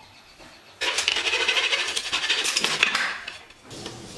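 Steel tape measure blade retracting into its case: a loud, fast metallic rattle that starts suddenly about a second in, lasts about two and a half seconds, and dies away near the end.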